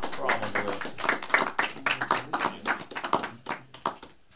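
A small group clapping by hand: a quick, irregular run of claps that thins out near the end, with voices talking over it.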